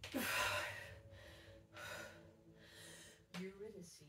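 A woman's forceful breath as she drives up out of a barbell back squat, the loudest sound, about a second long. Quieter heavy breaths follow as she braces between reps.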